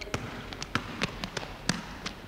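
Basketball dribbled on a hardwood gym floor: a run of sharp, irregularly spaced bounces.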